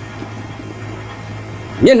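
A pause in a man's talk, leaving only a faint steady low hum; his voice starts again just before the end.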